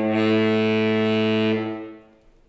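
Saxophone quartet of soprano, alto, baritone and tenor saxophones sounding one long note together. It starts cleanly, holds steady for about a second and a half, then dies away.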